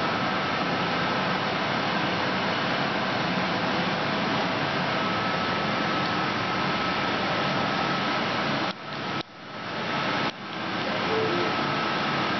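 Small benchtop CNC training lathe running, a steady whirring hum of its motors with a faint steady tone. Near the end the sound drops out sharply and recovers three times in quick succession.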